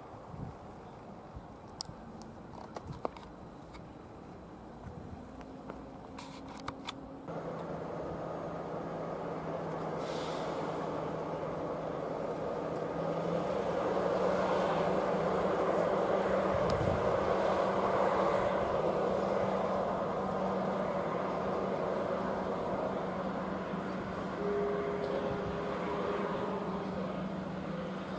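V36 vintage diesel-hydraulic shunting locomotive running and passing with a train of old passenger coaches, its steady engine drone together with the rolling of the wheels. The engine note sets in suddenly about seven seconds in, swells as the train comes level and then slowly eases off.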